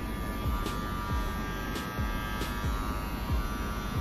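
Cordless Wahl Senior hair clipper switched on and running: a steady electric hum that stops near the end. A background music beat thumps underneath.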